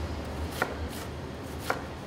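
Chef's knife dicing onions on a cutting board: a few sharp knocks of the blade on the board, the two loudest about a second apart.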